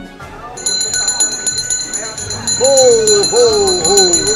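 A handbell shaken repeatedly, ringing from about half a second in, with a man's voice calling out over it in the second half.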